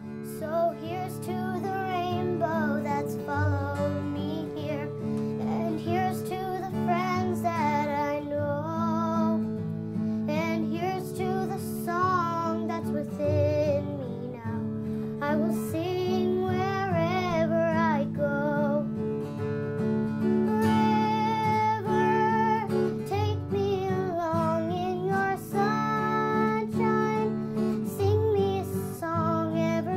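Background music: a song sung by a single voice over acoustic guitar, with a steady low drone under the melody.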